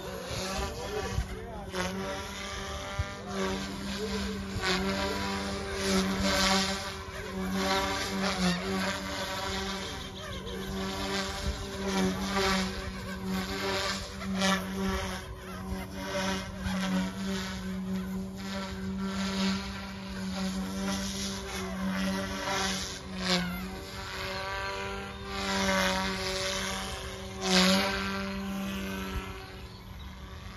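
Mikado Logo 200 electric RC helicopter flying aerobatics: a steady motor-and-rotor drone whose pitch wavers as it manoeuvres, with repeated swishing surges of the rotor blades.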